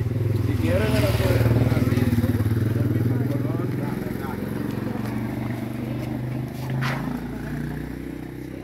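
Small motorcycle engine running close by, loudest a second or two in and then slowly fading as it moves off.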